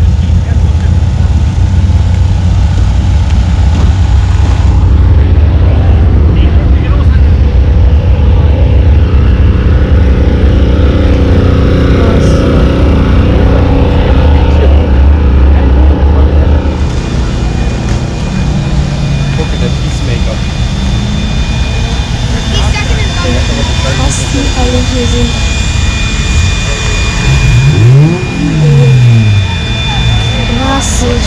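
Race car engines running loudly and without a break, easing off somewhat after about 17 seconds. Near the end one engine revs up and down.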